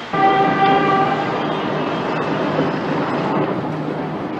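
A vehicle horn sounds one steady note for about a second near the start, over a continuous rumble of street traffic.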